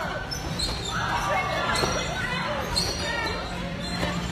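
Dull thumps of kids bouncing on trampolines, with indistinct children's voices and calls over a steady background hum.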